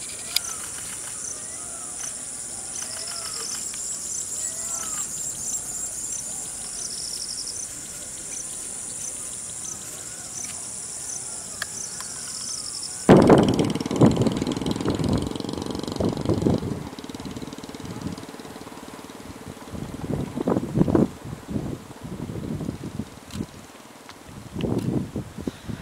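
Dusk insect chorus: a steady high-pitched trill with rapid ticking, and a short call repeating every second or so. About halfway through this cuts off abruptly to louder, irregular low noise in bursts.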